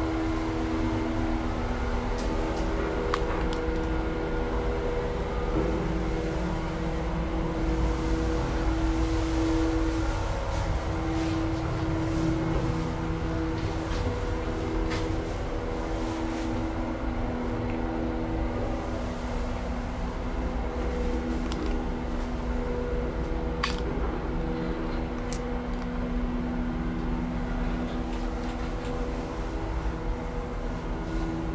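1950 Otis single-speed traction elevator running down, heard from inside the cab: a steady machine hum from the hoist motor over the rumble of travel, with the cab's ventilation fan running. A couple of sharp clicks come partway through.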